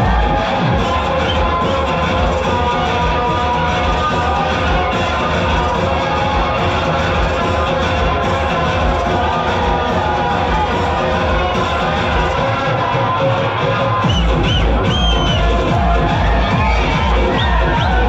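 Loud electronic dance music with a heavy bass beat, over the shouting and cheering of a large crowd. The bass beat drops out about half a second in and comes back about fourteen seconds in.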